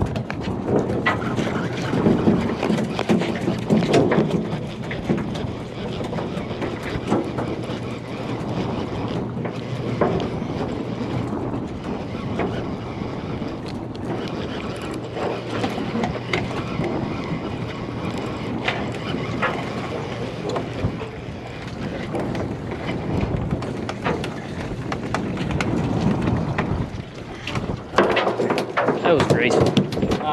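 Open-deck boat noise: wind on the microphone over a steady low engine hum, with indistinct voices of people nearby.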